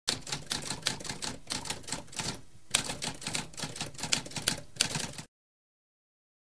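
Typewriter sound effect: a fast run of key strikes, a short pause about halfway, then a second run of strikes that stops abruptly about five seconds in.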